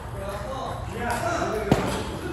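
One sharp click of a table tennis ball struck by a bat, about three-quarters of the way through, over steady background chatter of voices.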